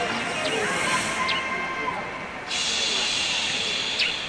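A steady high-pitched hiss of outdoor background noise that gets suddenly louder about two and a half seconds in, with faint voices underneath.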